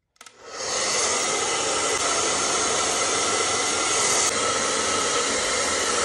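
Handheld hair dryer blowing, coming up to speed in the first half second and then running steadily, a rush of air with a faint whine in it.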